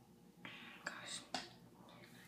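A faint whisper close to the microphone, with two sharp clicks about half a second apart near the middle.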